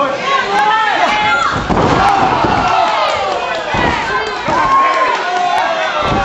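Crowd shouting and cheering around a wrestling ring, with heavy thuds of bodies slamming onto the ring mat, the first about a second and a half in and another near the middle.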